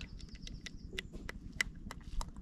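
Engine oil glugging out of a plastic bottle into a plastic measuring jug: a quick, irregular run of short pops as air gulps back into the bottle.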